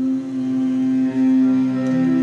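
Live band music with a string section holding a long steady note over acoustic guitar, with no singing.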